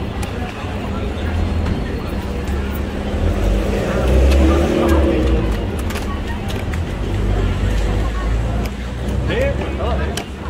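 Busy street ambience: voices of passers-by over a steady low rumble of road traffic, which swells about four seconds in.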